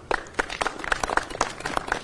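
A small group clapping: scattered applause with separate claps.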